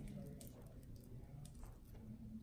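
Faint clicks and light handling sounds from a surgical needle holder and suture being worked through skin, over a low steady room hum; the room is otherwise quiet.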